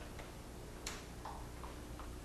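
Quiet room tone with a low steady hum, broken by a few faint, short clicks; the clearest comes a little under a second in.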